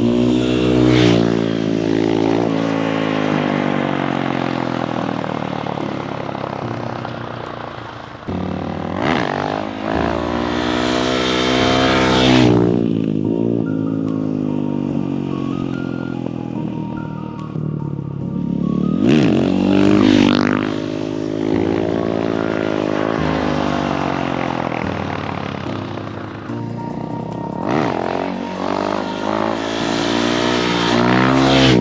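Husqvarna FE 501's single-cylinder four-stroke engine with an FMF full exhaust, loud, revving up and down: its pitch climbs and drops again and again as the bike accelerates, shifts and passes by, loudest about a second in and again near 12, 20 and 28 seconds.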